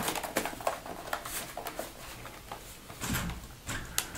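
Light plastic clicks and handling noise from a Dell Latitude D620 laptop as its battery is seated and the laptop is picked up and turned over. A few small, scattered clicks are followed by a louder stretch of handling about three seconds in.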